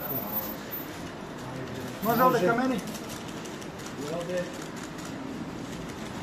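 A person's voice speaking in short bursts, about two and four seconds in, over steady background noise.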